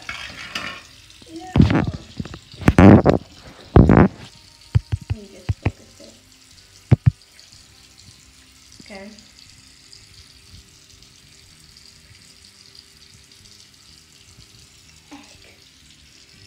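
Handling noise from a tablet held close to its microphone: three loud rustling bursts in the first four seconds, then several sharp clicks, then only a faint steady hiss.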